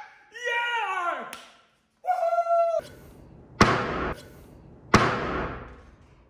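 A man's excited wordless shouts and laughter, then two sharp thuds about a second and a half apart, each with a fading ring.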